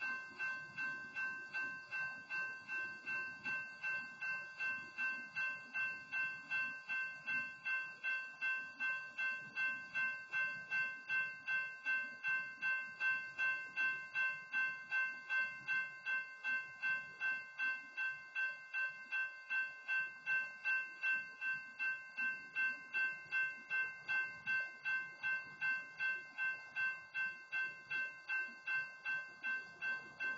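Railroad grade-crossing warning bell ringing steadily at about two strokes a second, the signal that the crossing circuit is activated by a train.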